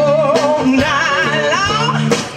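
Live blues band playing: a woman's voice holds a long note with a wide vibrato that slides upward near the end, over electric guitar, bass and drums.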